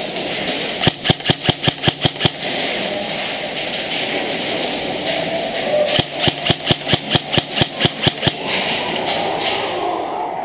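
Airsoft rifle firing two rapid bursts of shots, about six a second: a short burst about a second in and a longer one about six seconds in. A steady hiss runs under the shots and fades near the end.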